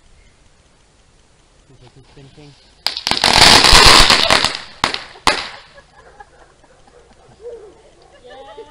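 A consumer ground firework going off: a sudden loud burst about three seconds in, dense rapid crackling pops for about two seconds, then two separate sharp cracks before it dies away.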